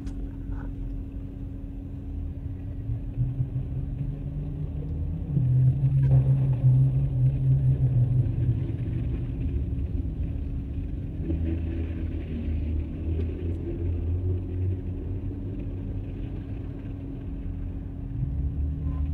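Low, steady motor-vehicle rumble with a constant hum, growing louder for a few seconds about five seconds in.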